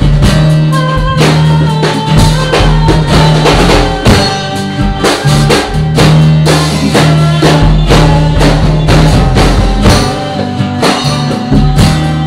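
Live band playing an instrumental passage with a steady beat: acoustic guitar, keyboard, electric bass, drum kit and congas.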